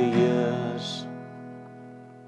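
Acoustic guitar chord strummed and left to ring, fading slowly. Over its first second a man's voice sings the end of a lyric line, closing on a hissed "s".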